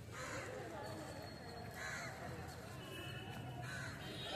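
A crow cawing three times, about two seconds apart, over faint chatter of people nearby.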